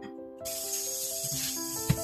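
Kitchen tap turned on about half a second in, water running steadily into a glass bowl in a stainless steel sink, with a single knock near the end. Soft background music plays throughout.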